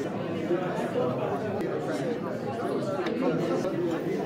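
Background chatter: several people talking at once, with no single voice standing out.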